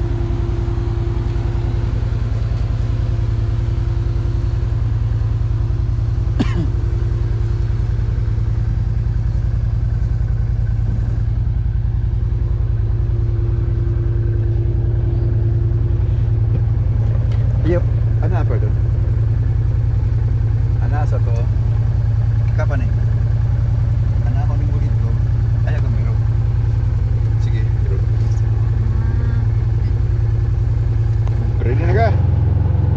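Can-Am Commander side-by-side's engine idling steadily, a low even drone that does not rev up or down.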